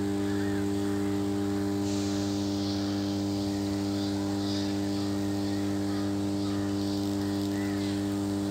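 Large oil-filled power transformer humming steadily: a deep, unwavering hum with a stack of overtones. The hum comes from magnetostriction, the core laminations stretching and relaxing with the alternating magnetic flux, and it sits at twice the supply frequency.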